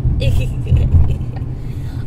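Steady low road and engine rumble of a moving car heard inside the cabin from the back seat, with a heavier low thump about a second in.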